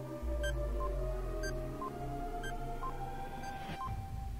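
Quiz countdown-timer sound effect: short beeps alternating higher and lower, about two a second, over a sustained synth music bed. A deep bass drone comes in just after the start, and a rising swell comes near the end as the timer runs out.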